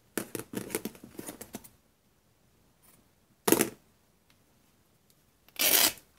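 Fabric rustling and rubbing in the hands as threads are pulled from its edge to fray it: a patter of small rustles over the first second and a half, then two short swishes, the second just before the end.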